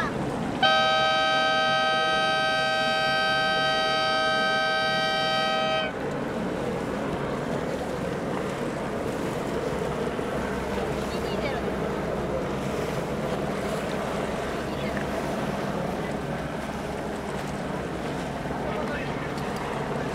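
A horn sounds one long, steady blast of about five seconds, two notes at once, starting about a second in. After it comes steady open-air noise of wind and water.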